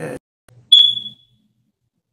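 A single short, high-pitched electronic beep about a second in, starting sharply and fading within half a second.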